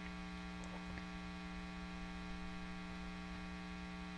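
Steady electrical hum made of several fixed tones, with a faint hiss underneath. It is the background buzz of the recording chain.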